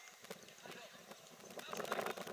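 Indistinct shouting voices on a football pitch, mixed with scattered sharp clicks. The voices get louder about a second and a half in.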